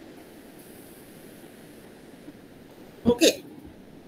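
Faint steady hiss of an open call line, then about three seconds in a brief, loud vocal sound from a person in two quick pulses.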